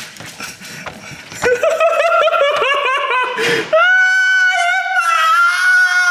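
A person laughing in quick high-pitched bursts after a second or so of scuffling and knocks, then breaking into one long, high-pitched squeal.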